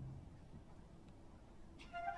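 An orchestra's low held note stops just after the start. A hushed pause in the opera house follows, close to silence, and a woodwind phrase begins just before the end.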